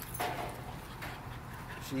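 American bully puppies making faint dog sounds, with one short sound about a quarter second in, over low background noise.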